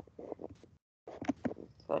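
Faint scattered clicks, with the audio cutting out to total silence for a moment about halfway through.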